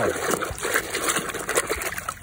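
A hand swishing plastic toy trucks through a basin of muddy water: steady splashing and sloshing, with a few small knocks.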